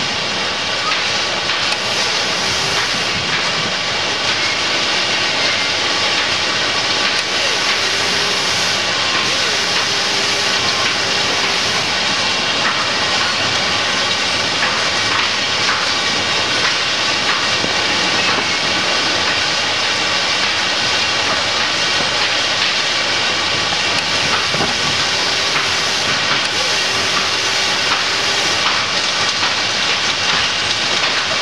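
Steady, loud hiss of factory-floor machinery noise with faint steady tones running through it.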